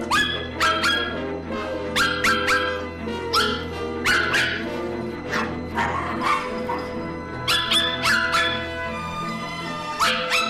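A dog barking in quick clusters of two to four barks, repeated every second or two over background music.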